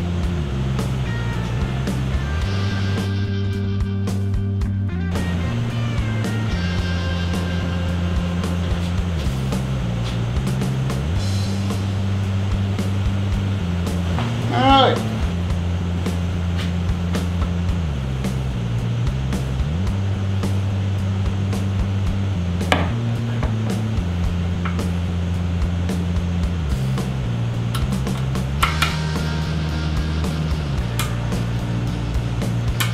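Background music with a repeating bass line that shifts every couple of seconds.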